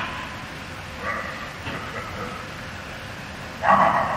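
Actors' voices on a theatre stage, distant and indistinct as picked up from the audience, in short broken phrases. A louder, short vocal burst comes near the end.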